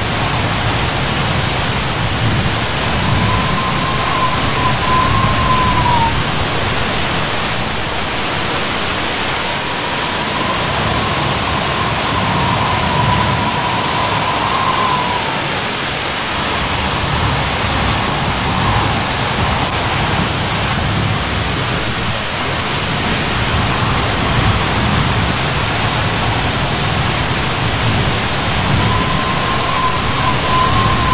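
Steady rushing roar of the tall Curug Semawur waterfall. A faint whistle-like tone rises above it three or four times, each lasting a few seconds and dropping in pitch at its end.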